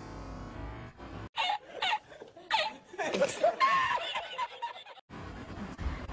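Background music fades out in the first second or so. Then a woman laughs, first in a few short separate bursts and then in a longer run of giggling: laughter she cannot hold back, which costs her the round.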